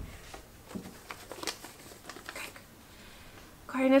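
A small square of paper being folded and creased by hand: light, scattered crackles and rustles of the paper being pressed flat.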